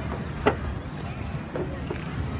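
Steady low motor-like rumble with a single sharp knock about half a second in, and a faint high whistling tone from about a second in.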